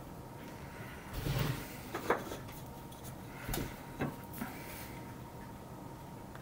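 Handling sounds of wooden strips, pegs and a plastic glue bottle on a workbench: a short rustle, a sharp click about two seconds in, then a few light knocks.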